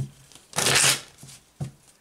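A deck of tarot cards being shuffled by hand: a sharp tap at the start, a short rustle of cards about half a second in, and another light tap near the end.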